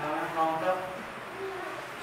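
A man's voice with long drawn-out vowel sounds in the first second, then a quieter sound about a second and a half in.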